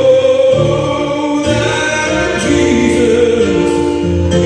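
Gospel song sung by male voice into a microphone, with electronic keyboard accompaniment of sustained, held chords.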